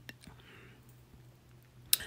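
A chef's knife slicing a jalapeño and knocking on a plastic cutting board. There is a light click just after the start and a sharper knock near the end, with quiet between.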